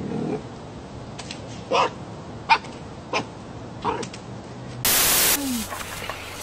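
Red fox giving short, high yips, about five spaced over four seconds, after a brief laugh. Near the end a loud burst of hiss cuts in for about half a second.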